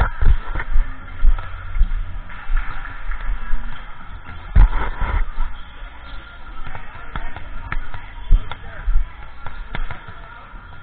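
Volleyballs being hit and bouncing in a reverberant gym: sharp smacks every second or so, the loudest about halfway through. Background music and voices run underneath.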